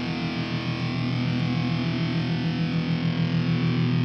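Rock music led by heavily distorted, effects-laden electric guitar holding a steady chord, getting slightly louder.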